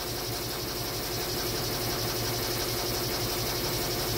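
Embroidery machine stitching in the background, a steady, rapid mechanical whir.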